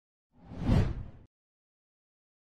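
A single whoosh transition sound effect on an animated logo end card, swelling to a peak and stopping abruptly after just under a second.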